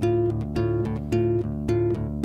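Solo acoustic guitar picked in a steady, repeating pattern of plucked notes.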